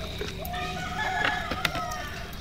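A rooster crowing: one drawn-out call lasting a bit over a second, with a couple of sharp clicks around it.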